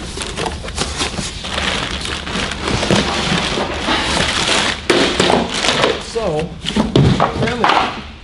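Plastic wrapping crinkling and rustling against a cardboard box as a boxed unit is lifted out of its carton, with cardboard flaps scraping and a few thumps along the way.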